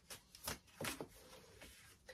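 Tarot cards being shuffled and handled by hand, faint, with a few soft flicks in the first second and quieter rustling after.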